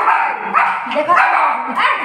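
A small dog barking several times in quick succession, short yaps one after another.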